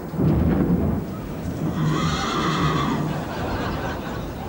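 A horse whinnying, one long neigh about two seconds in, over a steady low rumble.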